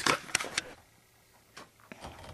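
A few light clicks and taps from someone climbing a metal ladder. There is a quick cluster in the first half-second, then near quiet, then a couple more taps near the end.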